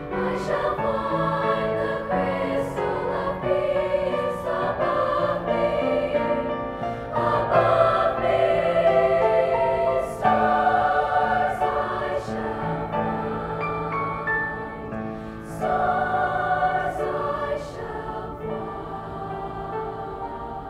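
Middle-school girls' choir singing a slow song in parts with piano accompaniment, growing louder in the middle.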